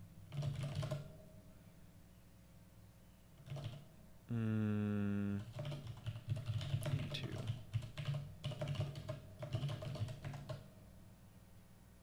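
Typing on a computer keyboard: quick runs of keystrokes near the start and a longer stretch of rapid keystrokes in the second half. A man's voice holds one steady note for about a second just past four seconds in.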